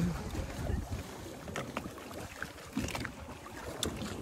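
Water splashing and lapping against a small boat's hull as a gray whale surfaces and slides alongside, with wind on the microphone.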